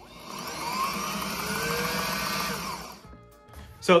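Sailrite Ultrafeed LSZ walking-foot sewing machine running at high speed as its foot pedal is pressed, its motor whine rising in pitch and then falling away as it winds down after about three seconds. It runs fast with only a light touch on the pedal.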